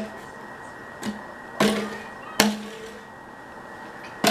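A cardboard tube knocked against a wooden table three times over about a second and a half, each knock followed by a short ring.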